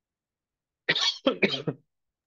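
A person coughing, three quick coughs in a row about a second in.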